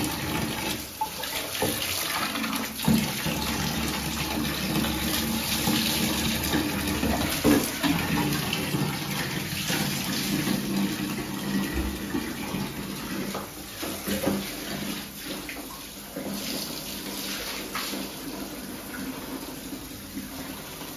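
Wall tap running steadily into a half-filled plastic bucket, with a few brief clicks and splashes.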